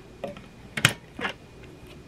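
The hinged lid of a triple slow cooker being lifted open: a few light clicks and clacks from the lid and its hinge, the sharpest a little under a second in.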